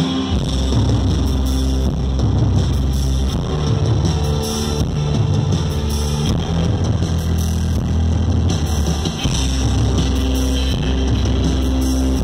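Live rock band playing an instrumental passage: electric guitar over drums and deep, sustained low notes that shift in pitch every second or two, heard from within the audience.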